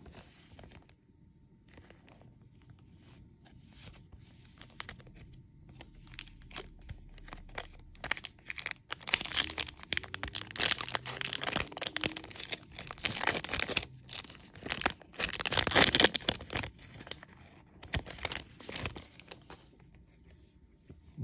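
A Topps Chrome trading-card pack wrapper being torn open and crinkled by hand, a crackling tearing sound that begins about eight seconds in and is loudest near the end. Before that there is only faint handling of the cards.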